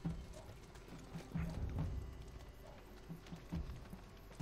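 Horses' hooves clopping on the ground, irregular dull thuds a few times a second.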